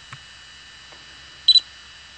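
A steady high hum made of several fixed tones, with a few faint clicks. About one and a half seconds in comes a short, sharp electronic beep, much louder than the rest.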